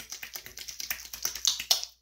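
Wet palms rubbing and pressing a leave-in hair serum between them to emulsify it: a quick, dense run of sticky little clicks and smacks that stops just before the end.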